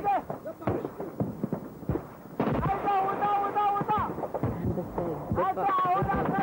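A run of sharp cracks in the first two seconds, typical of scattered gunfire. From about two and a half seconds a high voice holds long, wavering notes, and it comes back near the end.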